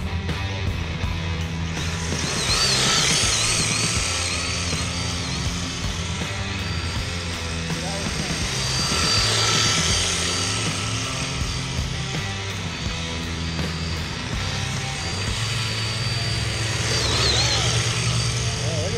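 Rock music with a steady, stepping bass line, over the high whine of electric RC drift cars' motors, which wavers with the throttle and swells three times as the cars pass.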